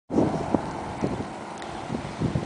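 Outdoor wind rumbling on a handheld microphone, with a few soft knocks, about one every half second, from handling or footsteps.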